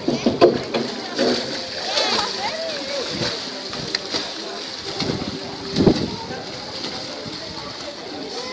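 Splashing of a swimmer's overarm strokes in choppy sea water, over a steady wash of waves, with voices calling out now and then.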